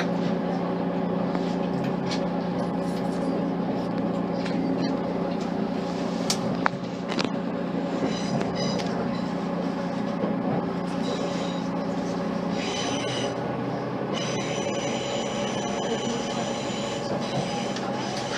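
Onboard sound of a Class 185 diesel multiple unit under way: the steady hum of its underfloor diesel engine and transmission, with wheel and rail noise and a few sharp clicks. The engine hum drops in level about two-thirds of the way through.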